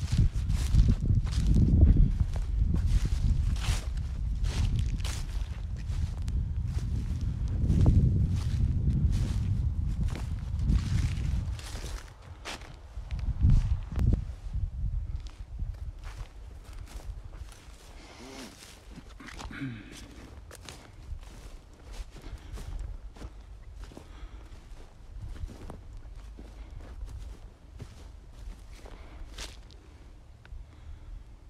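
Footsteps through dry, crunchy winter grass at a steady walking pace of about two steps a second, over a low rumble that is loudest for the first twelve seconds or so and then drops away.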